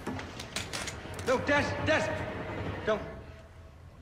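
Speech only: quiet dialogue from the TV episode, a man's voice, with a short "Don't" near the end.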